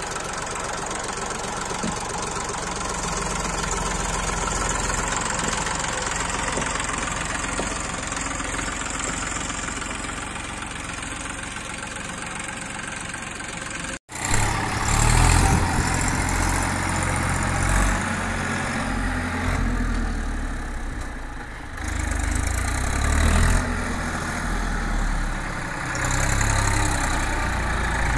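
Massey Ferguson 241 DI tractor's three-cylinder diesel engine running steadily while working under the weight of a full rear loader bucket. After a sudden cut about halfway through, the engine runs louder and rises and falls as the tractor turns hard in loose soil with its rear wheel spinning and kicking up dirt.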